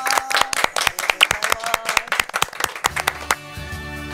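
A few people clapping their hands, in quick, uneven claps that stop about three seconds in. Music comes in as the clapping ends.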